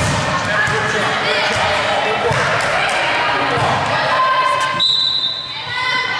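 A volleyball is struck and hits the hard gym floor amid players' voices in a large, echoing gym. About five seconds in comes a brief, steady, high-pitched tone.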